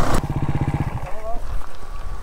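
Enduro dirt bike engine idling with a fast, even pulse, which drops away about a second in.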